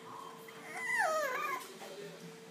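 French Bulldog puppy whining: a faint whine, then about a second in a louder high-pitched whine that falls steeply in pitch.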